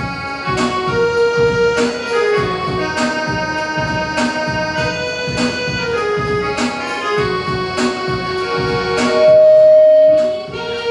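Electronic keyboard playing a carol introduction: sustained chords over a steady drum-machine beat, with one loud held note near the end.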